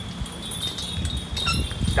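Wind chimes ringing in the pauses between spoken names: a held high tone with short, scattered higher tinkles, over a low rumble.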